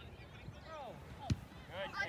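Distant shouting of voices across a soccer field, with one sharp thud a little past halfway, a soccer ball being kicked.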